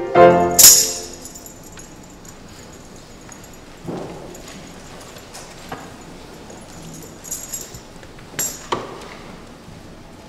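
A men's chorus ends on a final sung chord, cut off by a bright metallic jingle and crash less than a second in. Then the room goes quiet apart from a few scattered knocks and rustles as the singers sit down in wooden pews, the loudest pair near the end.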